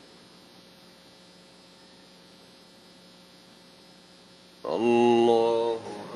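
Steady faint electrical hum from the mosque's loudspeaker system during the silent part of the prayer. About four and a half seconds in, a man's voice chants a drawn-out takbir over the loudspeakers for about a second.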